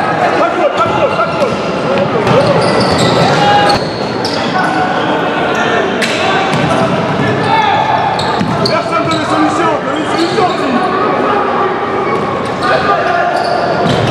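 Futsal being played in an echoing sports hall: the ball is kicked and bounces on the wooden court, shoes give short high squeaks, and players shout indistinctly throughout.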